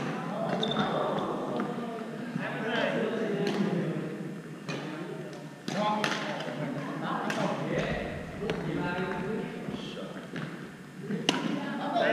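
Badminton rackets striking a shuttlecock during rallies: several sharp cracks at irregular intervals, the loudest near the end, over people talking in a large gym hall.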